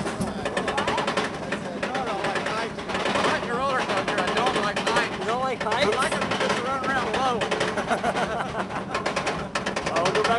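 Roller coaster train being hauled up its chain lift hill: a rapid, steady clatter of the lift chain and ratchet clicks.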